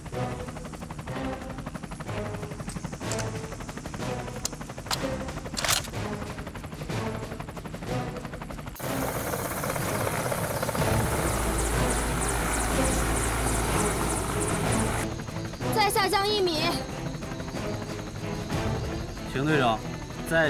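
Helicopter rotor and engine noise, a steady low thrum with fast chopping, for about six seconds in the middle, over background music; a voice is heard near the end.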